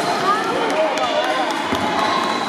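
Basketball sneakers squeaking on a hardwood gym floor in short rising-and-falling squeals, with a few sharp knocks of a bouncing basketball, over the chatter of players and spectators.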